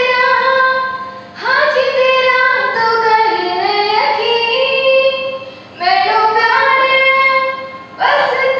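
A girl singing solo and unaccompanied into a handheld microphone, with long held notes that slide between pitches. She sings in three phrases, broken by short breaths about a second and a half in and just before six seconds.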